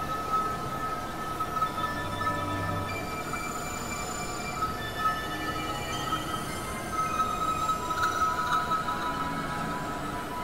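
Experimental synthesizer drone music: a steady high tone held throughout, with thinner high tones coming and going above it over a noisy hiss. A low hum joins briefly about two seconds in, and the high tones cluster more brightly near the end.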